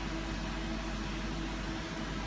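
Steady low hum under an even hiss, with a faint constant tone above it: mechanical background noise with no change across the two seconds.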